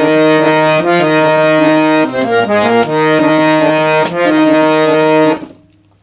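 Harmonium playing a short melody: held notes, a quick run of short notes in the middle, then held notes again, stopping about five and a half seconds in. The tune is played from a new starting note, in another scale.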